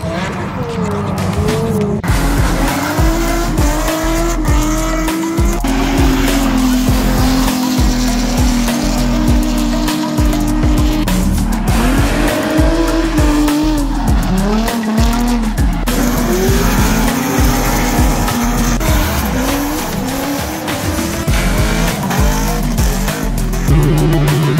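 Drift cars' engines revving up and down hard while their rear tyres squeal, sliding sideways under power through the turns, over background music with a beat.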